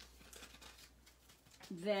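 Faint rustling and a few light clicks of packaged craft supplies being handled and moved about on a table.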